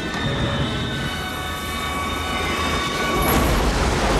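A train bearing down with a steady, shrill, several-toned sound held over its rumble. About three seconds in, the shrill tones give way to a loud, heavy low rumble and grinding as the train smashes through the wreck, throwing sparks.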